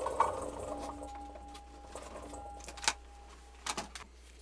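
Blueberries poured out of a plastic clamshell container into a stainless steel mixing bowl, pattering and rattling for about two and a half seconds while the bowl rings faintly. Two sharp clicks follow near the end.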